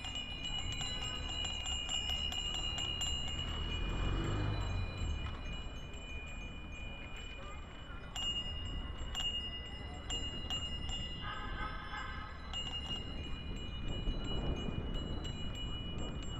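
Bicycle bells ringing over and over in a large crowd of cyclists, several high ringing tones overlapping and starting and stopping throughout, over a steady low rumble of wind and road noise.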